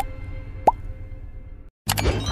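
Cartoon-style pop sound effects from an animated subscribe button: a sharp click at the start, then one short rising 'bloop' about two-thirds of a second in, over a fading low music bed that cuts out briefly near the end.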